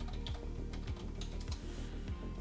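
Computer keyboard typing, a run of key clicks, over background music with a steady beat.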